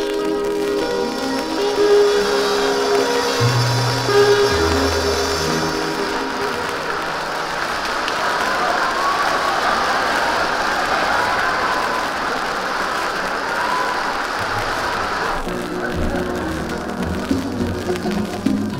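A dance orchestra holds its closing chords over a few low bass notes. The live audience then applauds for about ten seconds. The band starts playing again near the end.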